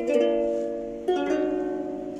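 Ukulele chords strummed and left to ring, two of them about a second apart, each fading slowly.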